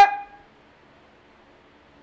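A man's speech trails off on a held vowel in the first half-second, followed by faint room tone in the pause.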